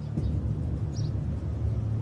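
A steady low background rumble, with a faint brief high blip about a second in.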